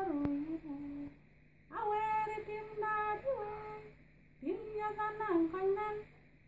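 A woman singing alone with no accompaniment. She holds long, steady notes in three phrases separated by short breaths, and the pitch steps between notes within each phrase.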